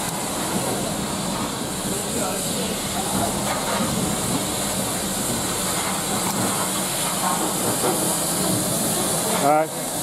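LMS Jubilee class 4-6-0 steam locomotive 45699 Galatea giving off a steady hiss of steam, with faint voices behind it.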